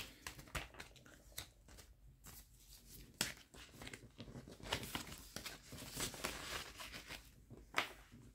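Paper bills and the plastic pages and envelopes of a ring binder being handled: quiet rustling and crinkling with light taps and clicks, a few louder ones scattered through.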